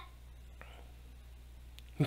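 Quiet room tone with a steady low electrical hum, and one faint click about halfway through.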